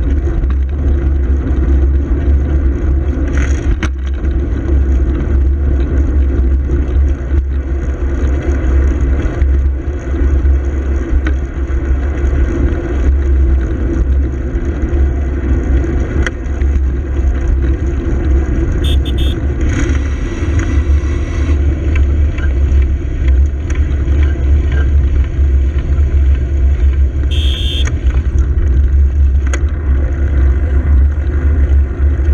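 Steady wind rumble on a bicycle-mounted camera's microphone over road and traffic noise while riding, with a car following close behind. A few short higher-pitched sounds come about two-thirds of the way through and again near the end.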